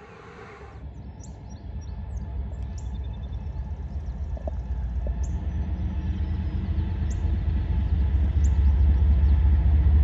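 CSX diesel locomotive leading a freight train toward the listener, its low engine rumble growing steadily louder throughout. A few short bird chirps sound above it.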